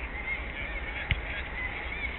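A football kicked once about a second in, a short sharp thud over a steady low rumble, with faint high calls in the background.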